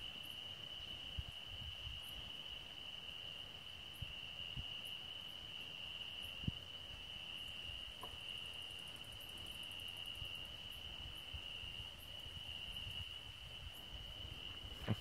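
Crickets trilling steadily on one unbroken high pitch, faint, with a few soft knocks.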